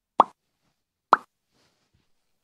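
Two short pop sound effects, about a second apart, over dead silence.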